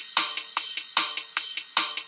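Programmed GarageBand Rock Kit drum beat playing back at 150 beats per minute: hi-hat, snare and bass kick in a simple two-step pattern, with strong hits about every 0.4 s and lighter ones between.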